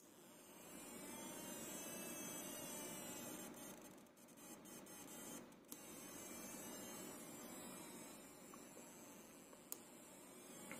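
Faint electronic tone from the small speaker of a two-transistor (NPN/PNP feedback pair) alarm oscillator, its pitch slowly gliding as the circuit runs after the trigger button is pressed. A few clicks come between about three and a half and six seconds in.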